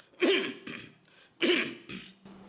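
A man clears his throat with two short, loud coughs about a second apart, the first followed by a smaller one.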